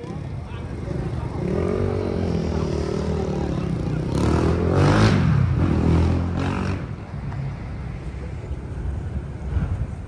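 A motor vehicle passing in city street traffic. Its engine note slowly rises and falls, grows loudest about five seconds in and then fades, over steady street noise.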